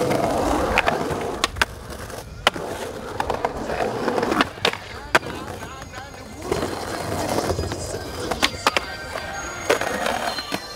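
Skateboard on concrete: wheels rolling and trucks grinding along concrete ledges in rough swells of noise, with repeated sharp clacks of the board popping and landing.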